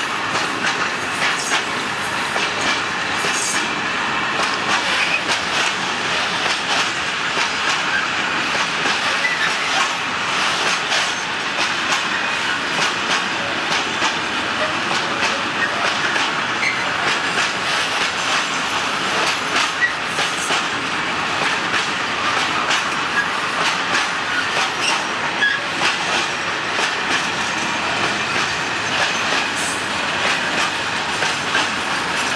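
Loaded flat freight wagons rolling past, their steel wheels clicking continuously over the rail joints at a steady pace.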